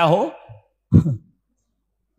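A man's voice finishing a word, then one short, sigh-like voiced breath about a second in, followed by dead silence.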